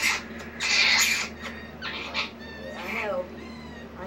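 Java macaque lip-smacking while grooming: a few short breathy smacks, then some thin, high gliding squeaks about two to three seconds in.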